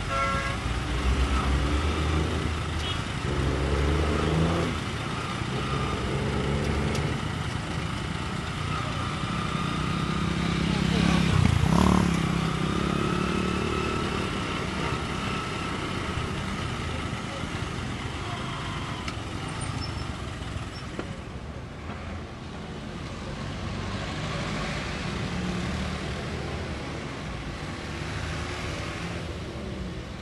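Busy street traffic: cars and motorcycles running and passing, with voices in the background. One vehicle passes close about twelve seconds in.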